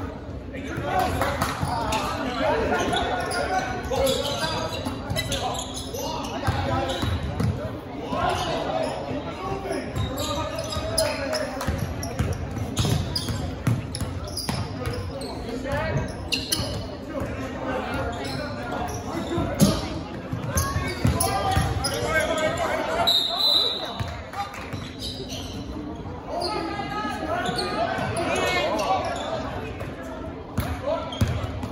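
Basketball bouncing on a hardwood gym floor during a game, with players' and spectators' voices echoing around the gym.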